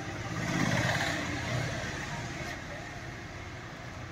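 A motor vehicle passing by, its noise swelling about a second in and then slowly fading, over a low steady background hum.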